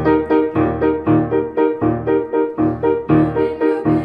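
Acoustic piano playing a steady accompaniment of repeated chords, about three strikes a second.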